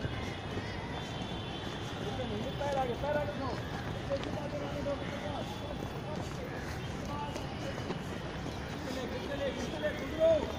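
Footfalls of athletes running sprint drills, with faint, intermittent distant voices over a steady outdoor background noise.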